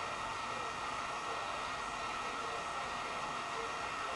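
Steady hiss of background room noise with no distinct events.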